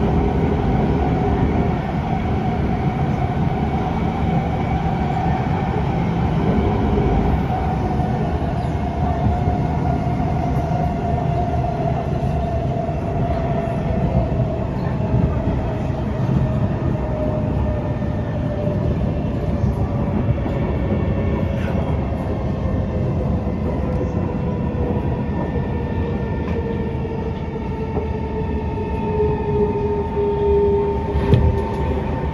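Inside an SMRT C151 (Kawasaki–Kinki Sharyo) metro train on the move: a steady rumble of wheels on rail, with a traction motor whine that falls slowly in pitch as the train slows.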